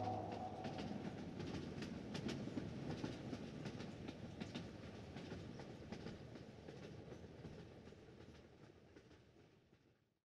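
Faint rushing noise with scattered sharp clicks and ticks, slowly fading out until it is gone near the end.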